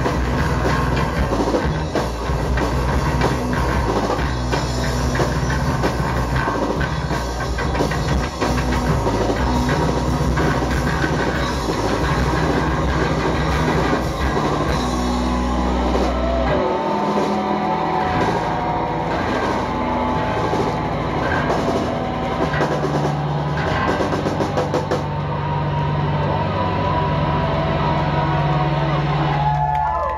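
Live rock band playing loud, with drum kit, electric guitars and bass. About halfway through the drums drop away and the song winds down into long held, ringing guitar and bass notes with wavering higher tones over them.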